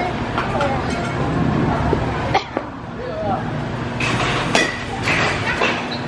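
Baseball batting cage: three sharp knocks of balls being struck or hitting the cage, the last and loudest about a second and a half after the first, amid voices and over a steady low hum.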